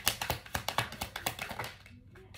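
A quick, irregular run of light clicks and taps, many a second, that stops just before the end.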